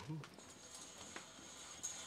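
A pause in dialogue: faint room tone after the tail of a spoken word, with a thin high steady tone in the second half and a couple of soft clicks.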